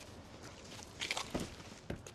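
A few footsteps on pavement, short sharp steps about halfway through, over a faint outdoor background.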